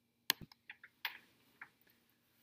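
Several light, irregular clicks of keys or buttons being pressed, six or so over the first second and a half, the first the loudest.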